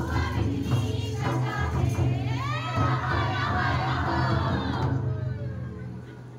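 Folk dance music: a pulsing drum beat with jingling percussion and group singing, including a long sliding sung phrase in the middle. The drum stops about five seconds in.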